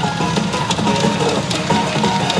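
Pachinko machine's in-game music playing steadily while its reels spin, with scattered clicks over it.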